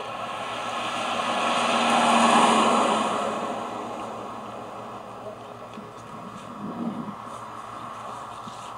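A car driving past on the road, its noise swelling to a peak about two seconds in and then fading away.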